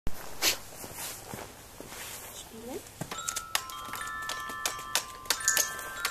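A dog's paw pressing the keys of a small toy keyboard. From about three seconds in, many quick presses each set off a clear, steady note, and the notes ring on and overlap.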